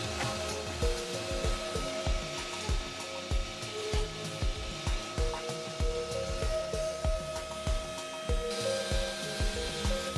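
Horizontal bore and panel grooving machine running, a steady motor whirr from its drilling and grooving units working a wooden stile. Background music with a regular beat plays over it.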